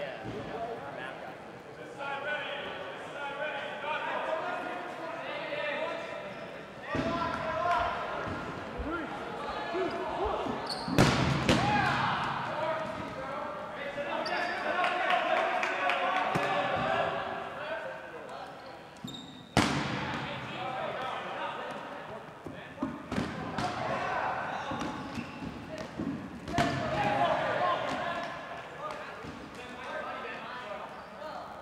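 Indistinct chatter of players echoing in a large gymnasium, with rubber dodgeballs bouncing and smacking on the hardwood court; a few sharp ball impacts stand out, the loudest about eleven seconds and about twenty seconds in.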